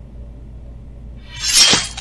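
A single short, hissy sound effect about one and a half seconds in, lasting about half a second: a slash effect for the dagger cutting off a Lego minifigure's hand.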